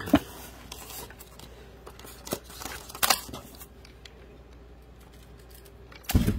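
Plastic telescope and tripod parts being handled and fitted together: a few sharp plastic clicks and light scrapes in the first three seconds, then quieter rubbing.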